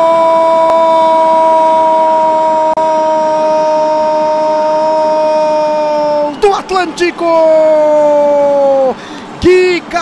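A Brazilian TV commentator's prolonged shouted goal cry, 'Gooool', held as one loud note for about six seconds that sinks slightly and breaks off. A few quick shouted syllables follow, then a second held shout that drops away near the end.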